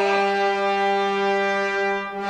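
Opera orchestra's brass section holding a loud, steady chord, with a slight dip and fresh attack near the end.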